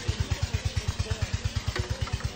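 Small motorcycle engine idling with a steady, rapid beat of about a dozen pulses a second.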